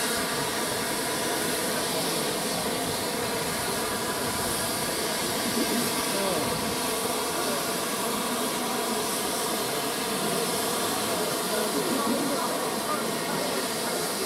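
Steady hiss of steam escaping from a line of GWR Castle-class steam locomotives standing in steam, over the chatter of a crowd of spectators.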